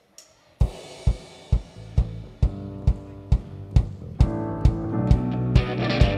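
A worship band's song intro: a steady drum beat of a little over two strikes a second comes in half a second in under keyboard chords. The band fills out with fuller held chords about four seconds in.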